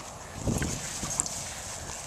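Soft footfalls and rustling on grass, fairly quiet, with a few faint low thuds about half a second in.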